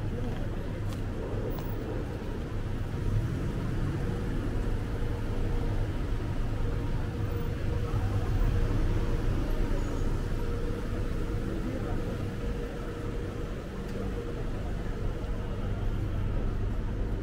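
City street ambience: a steady rumble of road traffic with indistinct voices of passers-by, and a steady hum through the middle of the stretch.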